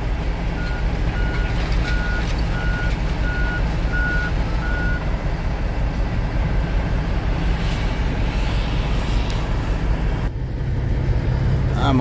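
Heavy diesel machinery running steadily, with a backup alarm beeping about twice a second for several seconds early on. About ten seconds in, the sound switches abruptly to a diesel engine heard from inside the truck cab.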